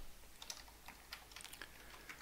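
Computer keyboard typing: faint, irregular key clicks as code is typed and lines are duplicated in an editor.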